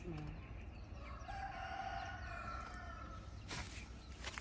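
A rooster crowing once: a single long call of about two seconds, starting about a second in.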